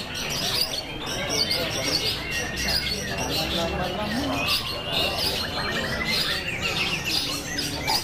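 A caged long-tailed shrike (cendet) singing a long, rapid, varied run of chirps and trills, over background chatter of voices.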